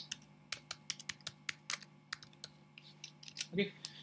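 Typing on a computer keyboard: a quick, irregular run of about twenty key clicks.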